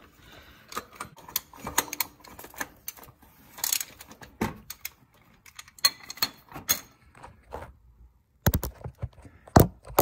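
Scattered metallic clicks and knocks from a cap-type oil filter wrench on an extension as it is seated on a tight oil filter and worked loose, with a few louder sharp knocks near the end.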